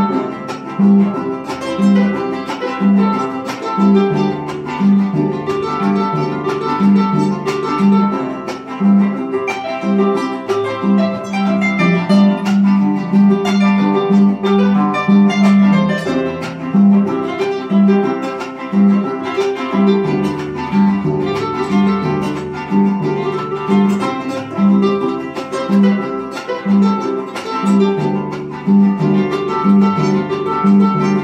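Venezuelan llanera harp playing a lively instrumental piece, a repeating pattern of plucked bass notes under a quicker plucked treble melody.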